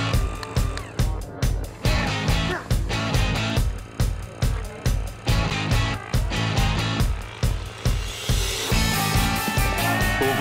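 Rock music soundtrack with a steady driving beat.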